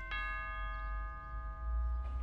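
Two-note doorbell chime, ding-dong: the second note is struck just after the start and both ring on, fading slowly. It signals a caller at the door.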